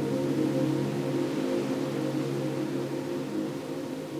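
Soft ambient background music: a sustained drone of low held tones with no beat, easing slightly quieter toward the end.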